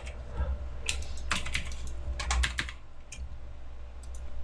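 Computer keyboard keys and mouse buttons clicking while working in Photoshop: a few scattered clicks, then a quick run of several clicks a little after two seconds in, over a steady low hum.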